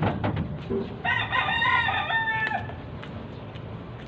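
A rooster crows once, a single call of about a second and a half beginning about a second in, held steady and then falling away at its end. A few short clicks come just before it.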